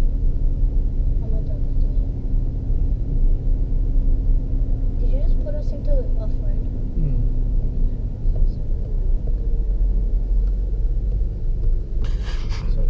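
Land Rover Discovery 3 heard from inside the cabin while driving on beach sand: a steady low rumble of engine and tyres, with a steady hum that drops away about two-thirds of the way through.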